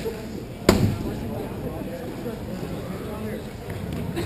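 Inline hockey play in a large echoing rink: a single sharp crack of a stick-and-puck impact about two-thirds of a second in, over a steady murmur of players' voices.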